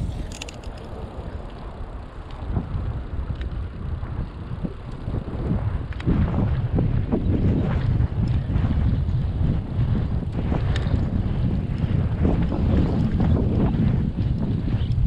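Wind buffeting the microphone while riding a bicycle: a low rumble that grows louder about six seconds in, with scattered small clicks and rattles.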